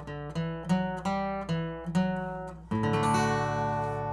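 Acoustic guitar picking a short run of single notes on the lower strings, about three a second, then a chord struck near the end of the third second that rings out and slowly fades: the song's closing figure resolving to D.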